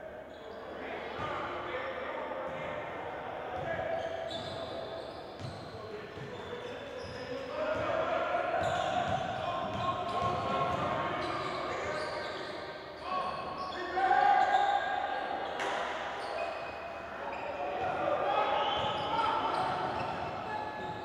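Basketball game sounds in a large gym: a ball bouncing on the hardwood court, with players' and bench voices calling out that the recogniser could not make into words, and the sound carrying in the hall.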